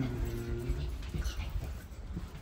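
A person's brief low hum, "mm-hmm", ending about a second in, over the low rumble of walking on carpet and of the handheld camera moving.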